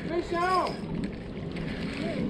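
A short, drawn-out vocal exclamation in the first second, then a steady low rush of wind on the microphone.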